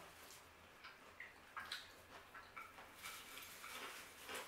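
Faint chewing of fried onion rings: soft, scattered mouth clicks and small crunchy ticks.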